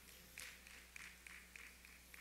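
Near silence: room tone with a steady low hum and a few faint soft ticks.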